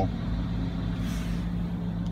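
Overfinch Range Rover Sport engine idling, a steady low hum heard from inside the cabin.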